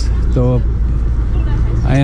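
A steady low rumble of outdoor street noise, with a man's voice saying one short word about half a second in and starting another at the end.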